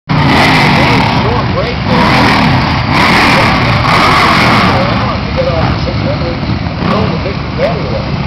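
Several racing superbike engines running together in a loud, steady din, their pitch swinging up and down as they rev, with people's voices close by.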